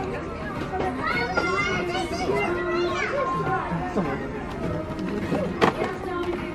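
Indistinct voices, including high-pitched children's voices, over background music, with a single sharp click near the end.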